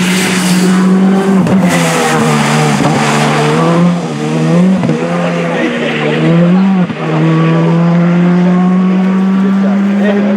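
Rally car engine at high revs as the car slides along a muddy gravel stage. The engine pitch drops and climbs again three times around the middle as the driver shifts and lifts, then holds steady at high revs near the end. Tyres scrabble and spray gravel early on.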